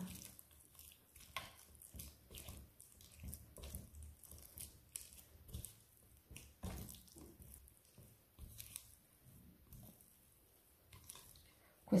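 Small spatula stirring and folding a very wet, high-hydration dough in a glass bowl: faint, irregular squelches with light ticks of the spatula against the glass.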